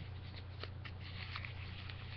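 Folded lined-paper card packets being shuffled by hand: faint, scattered paper rustles and light taps over a steady low hum.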